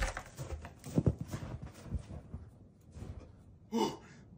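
A person's footsteps thudding through deep snow, with the heaviest steps about a second in. Near the end comes a short loud vocal gasp as the body hits the snow straight out of a hot sauna.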